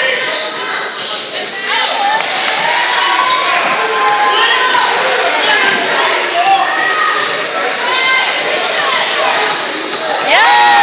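Basketball bouncing on a hardwood gym floor during play, with players' and spectators' voices calling out, all echoing in a large gymnasium.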